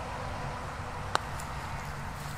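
A putter strikes a mini golf ball once, a single sharp click about a second in.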